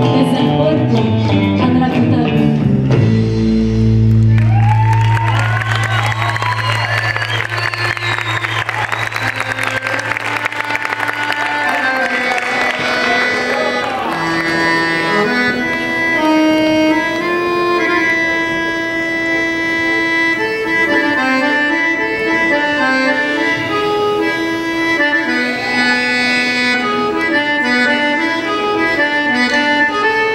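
Live band music led by an accordion with bass guitar and drums. The band holds a long low note for several seconds under a noisy wash of sound, then from about halfway the accordion plays a melody over the band.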